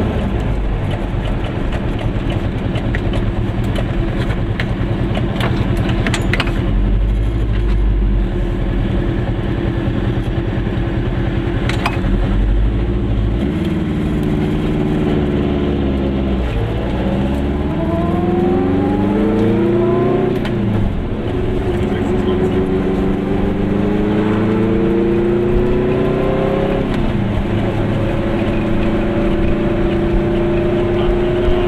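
Goggomobil's small two-stroke twin engine running low through a roundabout, then pulling away up through the gears. Its pitch rises three times, dropping back at each gear change, about halfway in, two-thirds in and near the end, before it settles into a steady cruise.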